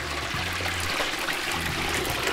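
Hot peanut oil bubbling and sizzling steadily around a whole turkey frying in a deep-fryer pot, with a faint low hum underneath.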